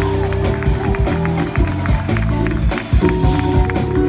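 Live jazz-fusion band playing: a drum kit keeping a steady beat over held electric bass notes and keyboard chords.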